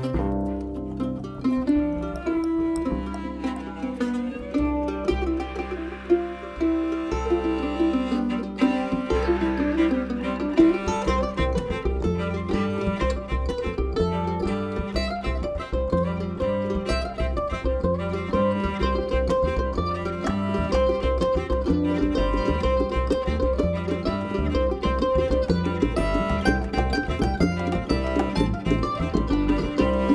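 Acoustic string band playing live: upright bass, cello and mandolin. Long held low notes for about the first ten seconds, then a quicker rhythmic groove from about ten seconds in.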